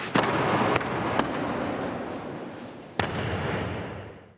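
A thrown person landing on a dojo mat, a loud slap just after the start, followed by a few sharper knocks at intervals, over a hiss that fades out near the end.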